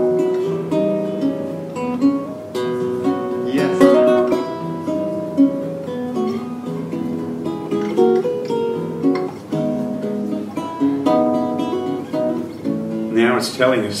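Guitar played by hand: a slow chord progression picked and strummed, with a melody line ringing over the chords. A man starts speaking near the end.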